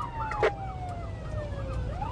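Police siren wailing, its pitch sliding slowly down and then sweeping back up near the end, over a second, faster warbling siren and the low rumble of the patrol car's engine and road noise from inside the cabin. A single sharp click comes about half a second in.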